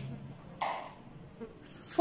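Quiet room with a faint low hum, and a short soft rustle about half a second in as a red counting stick is dropped into a clear plastic cup.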